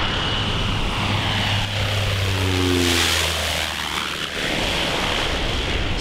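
Single-engine crop-dusting airplane making a low spraying pass: its engine and propeller sound swells to a peak about halfway through as it goes by, then drops in pitch as it moves away.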